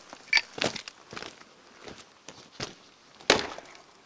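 Axe splitting a stubborn old oak log on a chopping block: several lighter knocks, then one hard strike near the end that leaves the blade stuck in the wood.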